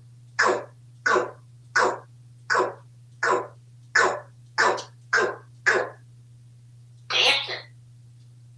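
African grey parrot making a rapid, evenly spaced run of short cough-like sounds, about nine of them, then a longer double one near the end.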